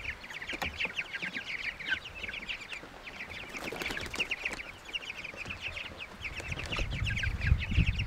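A flock of young meat chickens cheeping, many short high peeps overlapping without pause.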